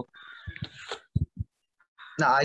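A faint, harsh bird call in the background for about the first second, followed by three short, soft low thumps.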